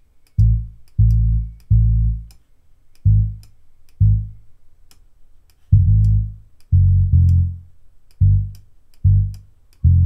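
Deep software bass playing a reggae stepper bassline: about a dozen low notes in a repeating, bouncing rhythm, some short and some held. Faint, regular high ticks run above it.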